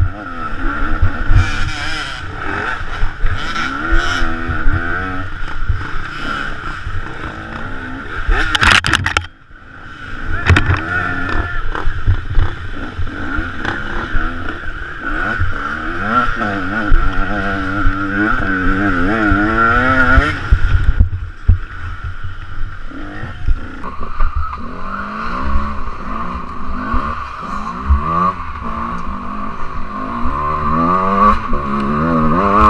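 KTM 125 EXC two-stroke enduro engine revving up and down over and over as the bike is ridden hard over rough ground, with knocks from the bumps. The throttle shuts off briefly about nine seconds in, then the engine picks up again.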